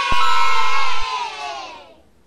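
Crowd cheering over a held music chord, cut in with a sharp click just after the start, loudest for about the first second and then fading out near the end.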